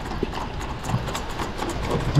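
Spinning reel being worked with a fish on the line: faint, irregular small clicks over a steady outdoor wash of wind and sea.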